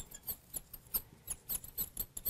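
Marker squeaking and tapping on the glass of a lightboard as a word is written, a quick irregular run of short high squeaks.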